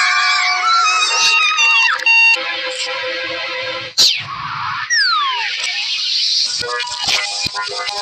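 Cartoon soundtrack music and sound effects played backwards: held tonal notes, a sharp loud hit about four seconds in, and a falling glide about a second later.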